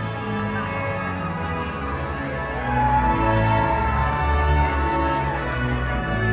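Music with long held notes; a high note is held for a few seconds in the middle, and the music gets louder about three seconds in.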